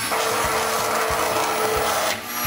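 Handheld immersion blender running steadily in a saucepan of cooked soup, its motor whine over the churning of the blades through the liquid as the squash is pureed smooth.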